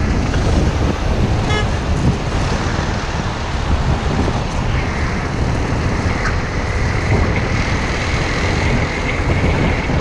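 Wind buffeting the microphone over steady road and traffic noise from an Aprilia Scarabeo 200ie scooter riding at speed among cars, with a brief high beep about one and a half seconds in.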